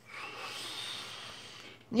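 A person's long, breathy exhale, a sigh, that fades slightly and stops just before the end.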